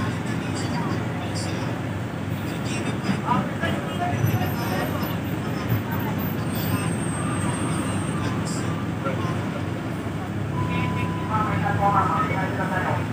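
Steady low rumble and hum of a bus engine idling while the bus stands at a stop, heard from inside the cabin, with indistinct voices in the background.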